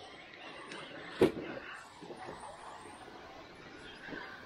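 Cross RC KR4 scale crawler working over loose rocks: faint clattering noise, with one sharp knock a little over a second in.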